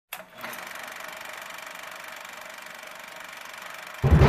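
Film projector running: a steady, fast, even mechanical whirr with rapid regular clicks, starting just after a brief moment of silence.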